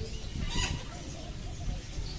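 Male Indian peafowl (peacock) giving one short, harsh call about half a second in.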